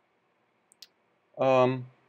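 A man's voice holding a short, steady-pitched 'uhh' for about half a second, about a second and a half in. Just before it come two faint clicks.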